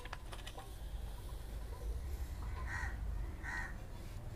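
Quiet background hum with a few faint clicks near the start, and two short distant calls about a second apart in the second half.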